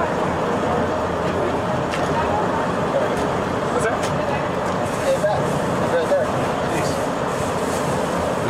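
Steady street traffic noise, with distant, indistinct voices talking over it.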